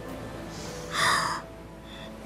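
A young woman crying, with one loud sobbing gasp about a second in.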